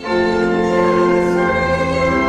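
A hymn: an organ playing sustained chords with voices singing along. A new phrase begins right at the start after a brief breath.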